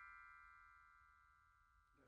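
Near silence: the last of a chime-like ringing tone, one pitch with overtones, fading out within about the first second.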